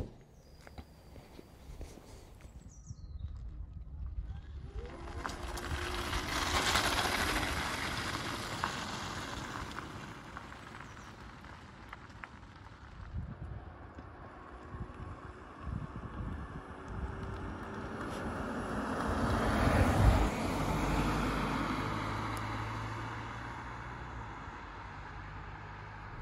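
A Peugeot 508 Hybrid passing by on a country road, its tyre and road noise swelling and fading twice, loudest about seven seconds in and again around twenty seconds. A sharp bang comes at the very start, when the car's bonnet is shut.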